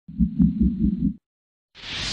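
Logo-ident sound effects: a low throbbing rumble pulsing about five times a second for about a second, cut off abruptly, then a short gap and a rising whoosh near the end.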